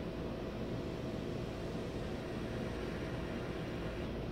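Steady background hiss with a faint constant hum, unchanging throughout and with no distinct sounds in it.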